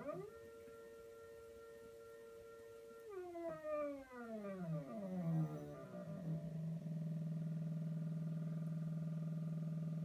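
AutoTrickler V2 powder trickler running: it starts with a steady whine for about three seconds, then the pitch glides down and settles into a lower, steady buzz as it ramps down to trickle the last grains of powder onto the scale near the target charge weight.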